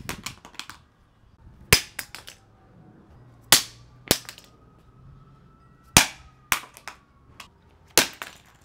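Compact rechargeable work lights thrown hard onto concrete, each landing with a sharp crack followed by a short clatter of smaller bounces. The impacts come about every two seconds, several in a row.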